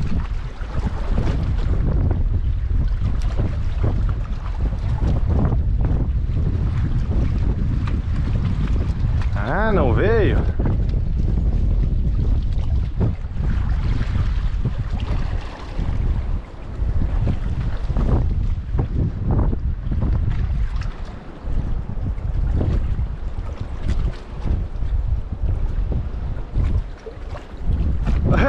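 Wind buffeting an outdoor camera microphone: a heavy low rumble that swells and dips throughout. There is a brief wavering call about ten seconds in.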